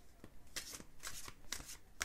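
A deck of Magical Mermaids and Dolphins oracle cards shuffled by hand: a quick run of papery slaps and rustles of card against card, about three a second.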